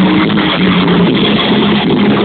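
Oi! punk band playing live: distorted electric guitars, bass and drums in a steady loud wall of sound, with no vocals in this stretch.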